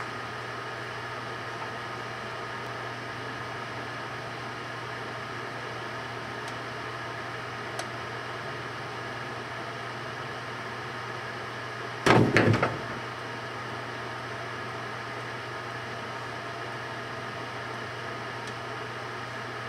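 Microwave oven running with a steady hum. About twelve seconds in, a short loud clatter of several knocks as the overheated cordless drill inside topples over onto the turntable.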